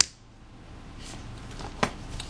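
Small clicks from fingers working the ZIF ribbon-cable clamp on a compact camera's circuit board: a sharp click at the start and a fainter one near the end, with quiet handling between.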